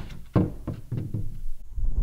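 A few dull knocks and thuds as a heavy piece of fiber cement siding trim is handled and bumped, the loudest about a third of a second in.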